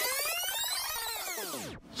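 Synthesized transition sound effect: a cluster of tones sweeping up in pitch and then back down, cutting off shortly before the end.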